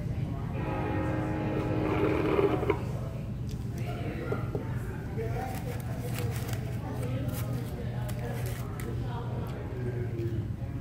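Restaurant background: indistinct chatter of other diners over a steady low hum, with light clicks and knocks of cups and tableware. A held musical sound plays for a couple of seconds near the start.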